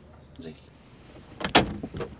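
A single loud clunk of a car door about one and a half seconds in, the door being opened from inside the car.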